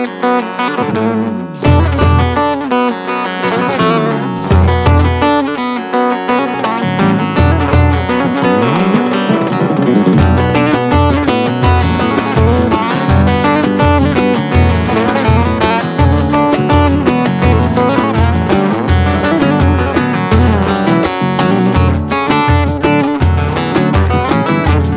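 Instrumental intro of an acoustic Turkish folk-pop song in the Ankara oyun havası dance style: plucked acoustic guitar and strings over a steady, even low beat.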